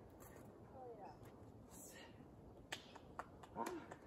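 Faint, quiet background with a few sharp clicks scattered through, a short pitched sound about a second in, and a brief voice-like sound near the end.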